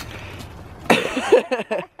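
Laughter starting about halfway through, over faint outdoor background noise, cutting off suddenly just before the end.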